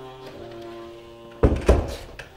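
Soft background music with held notes, then, about one and a half seconds in, a door shut with two heavy thuds in quick succession.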